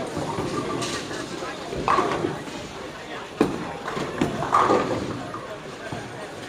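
Bowling alley din: a steady rumble with several sharp clatters of balls and pins, over a background of voices.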